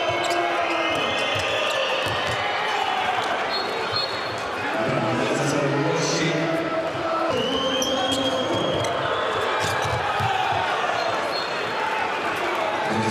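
Handball ball bouncing on an indoor court, with players' shoes squeaking now and then, over the steady noise of the arena crowd.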